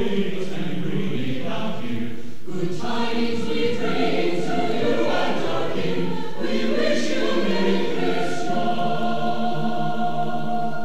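Mixed chamber choir singing, the voices moving through changing chords and then settling onto a long held chord near the end.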